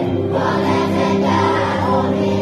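Children's choir singing in Hungarian, held notes in unison over a steady low backing.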